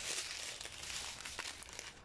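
Small clear plastic bags of diamond-painting drills crinkling faintly as they are handled, dying away toward the end.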